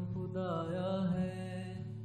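Acoustic song cover: a male singer holds one long, wavering note without words over steady guitar accompaniment.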